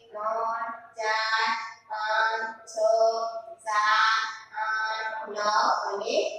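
A woman's voice chanting in a sing-song way, in short held phrases about one a second, as in counting aloud item by item.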